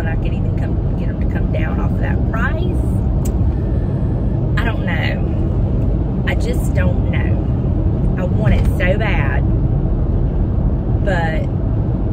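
Steady road and engine rumble inside a moving car's cabin at highway speed, under a woman talking in short stretches.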